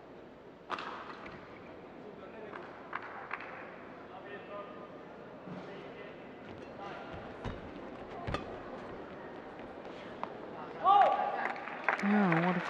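Badminton rally: sharp knocks of rackets striking the shuttlecock, spaced irregularly over the hall's low background noise. A loud voice call comes near the end.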